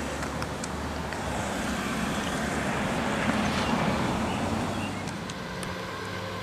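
A car driving past: road noise swells to a peak about halfway through and fades away.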